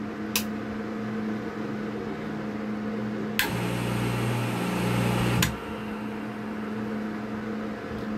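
Rocker switch clicking twice, then a small peripheral water pump's electric motor switching on with a click about three and a half seconds in, humming for about two seconds and cutting off with a click: a quick test run through the control box's power switch. A fainter steady hum sits underneath throughout.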